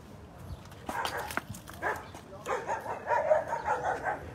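Dogs barking fiercely in territorial alarm at people approaching their yard. There is a short run of barks about a second in, then a longer stretch of rapid barking from about two and a half seconds on.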